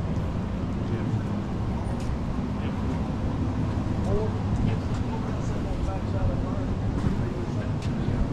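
Faint voices of other people talking over a steady low hum.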